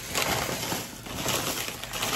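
Crumpled wrapping being handled, with a busy run of rustling and crinkling crackles.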